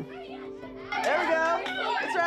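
A group of children's voices chattering and exclaiming together, coming in about a second in, over background music with steady held notes.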